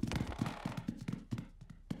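Quick run of light cartoon footsteps climbing stairs, growing fainter as they move away.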